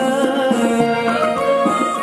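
Live Sudanese song performed with a band, amplified through a PA. The male singer's voice is heard over the accompaniment at first, and the band carries on alone as he lowers the microphone.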